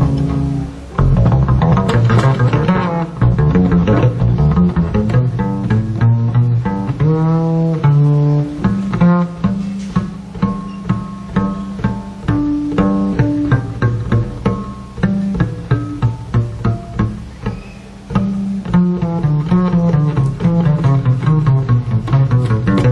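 Live acoustic jazz trio music led by a double bass played pizzicato, a run of plucked bass notes with a few sliding notes about a third of the way in.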